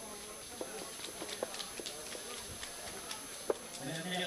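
Quiet venue ambience: faint background voices with scattered short, sharp clicks at irregular intervals, the loudest click about three and a half seconds in.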